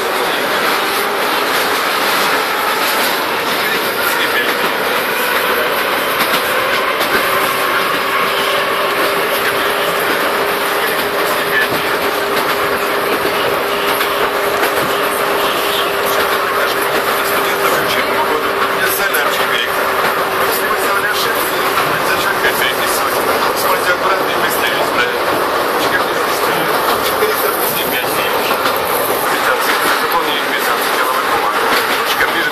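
Kyiv Metro train running at speed, heard from inside the car: steady rolling and running noise. A steady whine comes in several seconds in and fades out about three quarters of the way through.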